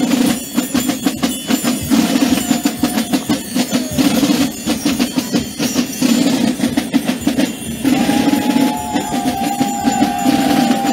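Carnival drum band (batterie) of snare drums and a bass drum playing a steady, fast marching rhythm for the Gilles. A held higher tone joins about eight seconds in.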